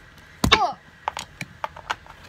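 A child's short exclamation "Oh" with a sharp knock about half a second in, followed by a handful of light knocks and taps from handling close to the phone's microphone.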